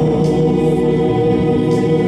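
Live music: a male singer holding a long sung note into a handheld microphone, backed by choir-like backing vocals and band.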